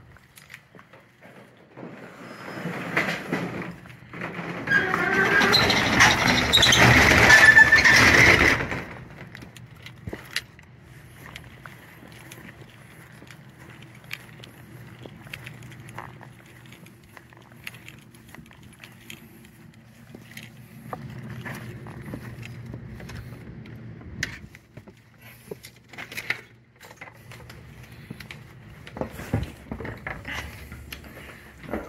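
Footsteps outdoors while walking. A loud rushing noise lasts several seconds near the start and cuts off suddenly; after it come light scattered clicks over a faint low hum, and a few sharper clicks near the end as a house door is reached and opened.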